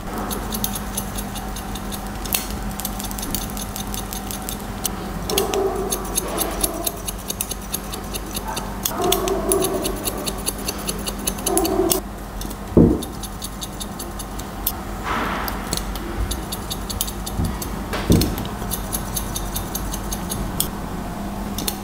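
Barber's haircutting scissors snipping in quick runs of small cuts, point cutting into the ends of the hair to soften the cut line. Two louder knocks come a little past the middle and near the end.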